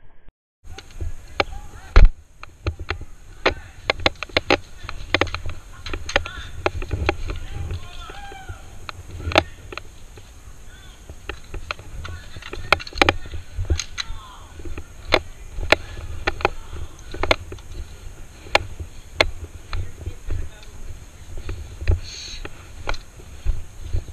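Irregular sharp pops of airsoft guns firing in a skirmish, one very loud shot about two seconds in. Under them are the rumble and knocks of a body-mounted camera on the move, and faint calls of distant players.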